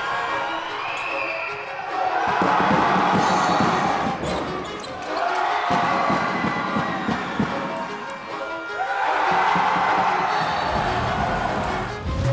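Handball game sound in an indoor hall: a ball bouncing and striking the court floor again and again, with crowd noise that swells up twice. Faint music plays underneath.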